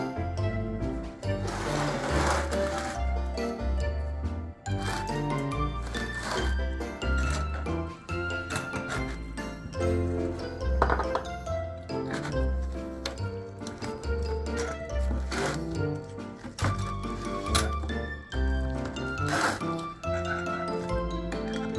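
Background music with a steady bass line.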